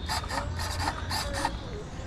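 Small RC servo rasping in short repeated strokes, about four a second, as it works the throttle linkage that opens the go-kart engine's carburetor.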